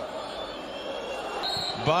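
Football stadium ambience: a steady wash of crowd and pitch noise from a sparsely filled ground, with a brief high tone about one and a half seconds in.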